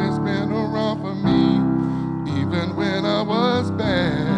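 Live church music: a man singing a slow, drawn-out line with vibrato into a microphone, over sustained keyboard chords that change about a second in and again past two seconds.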